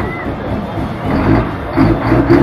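Old Mercedes-Benz diesel truck engine running, getting louder about a second in with uneven pulses as it is revved. People's voices are heard at the start.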